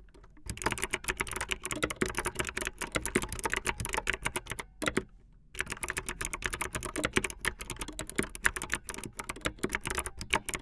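Fast typing on a keyboard with Kailh optical clicky switches: a rapid, dense run of sharp key clicks, pausing briefly at the start and again for about half a second midway.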